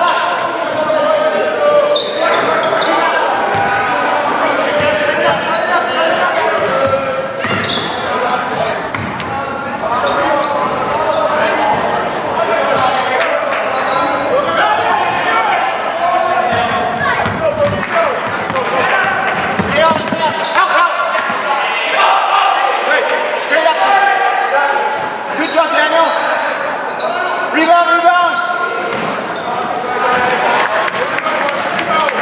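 Live basketball game sound in a school gym: the ball bouncing on the hardwood floor amid indistinct voices of players and spectators, echoing in the large hall.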